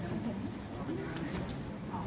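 Indistinct voices talking in the background, with a few light clicks.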